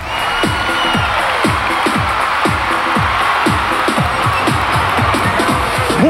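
Electronic break music: a dense, steady wash with repeated falling pitch sweeps, about two a second, starting abruptly as the programme goes to a commercial break.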